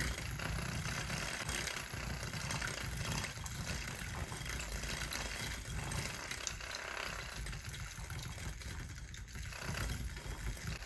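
Handheld battery milk frother running steadily, whisking thick sea moss gel in a small glass to break up lumps in the gel.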